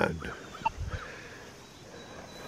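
Minelab Deus 2 metal detector giving a few short, faint, warbling signal tones in the first second as the coil passes over a piece of flat iron.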